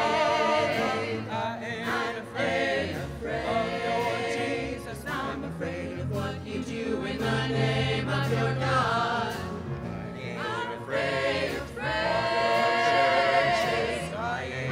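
Small group of mixed voices singing in harmony with vibrato, accompanied by grand piano.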